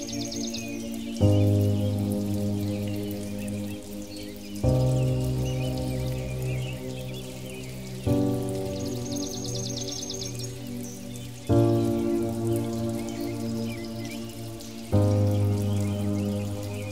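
Slow ambient music: a new chord is struck about every three and a half seconds and fades away. Under it runs a steady patter of rain.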